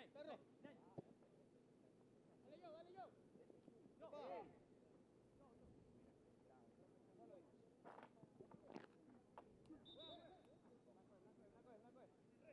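Very faint, distant voices calling out across an open football pitch, over quiet outdoor ambience, with a short high tone about two seconds before the end.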